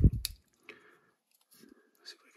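A low bump and a sharp click at the start, then a couple of faint ticks: a T8 Torx bit driver turning a knife's pivot screw out, with the small clicks of handling the metal and plastic parts.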